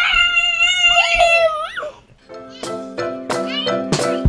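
A small child's long, high-pitched shout of "Swimmmming!", drawn out for about two seconds. Then, after a short gap, background music with a steady beat starts.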